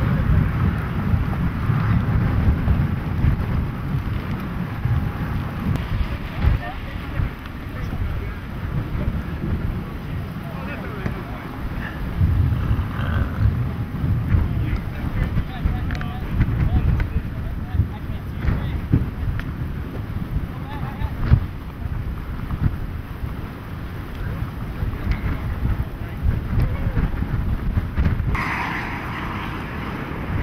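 Gusty wind buffeting the camera microphone: a low, rumbling rush that rises and falls in strength.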